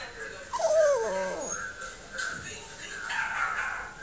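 A Yorkshire terrier makes one whining call about half a second in that falls in pitch, answering other dogs in a video playing on a monitor.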